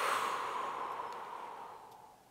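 A long, slow exhalation through the mouth, loudest at first and fading out over about two seconds: breathing out while deep thumb pressure is held on a trigger point in the calf.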